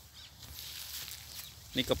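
Faint open-air outdoor ambience with no distinct event, then a man starts speaking near the end.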